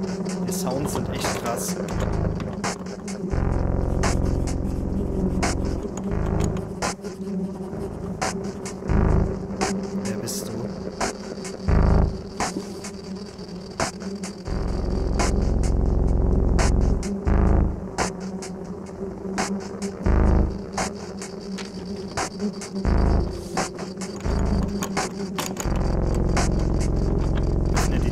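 Dark horror-film soundtrack: a steady low drone with swells of deep rumble, over which come many scattered sharp clicks.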